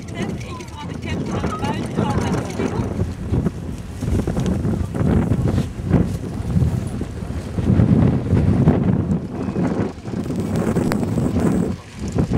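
Wind buffeting the microphone, a low uneven rumble that swells and fades.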